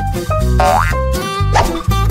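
Playful background music with a steady low beat, and a cartoon 'boing' sound effect that slides quickly up in pitch about half a second in.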